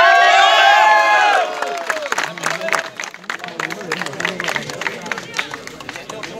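A man's voice through a handheld megaphone, one long drawn-out call lasting about a second and a half. This is followed by a crowd clapping and chattering.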